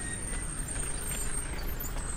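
Pickup truck engine running as it drives slowly past close by, over a steady low street-traffic rumble.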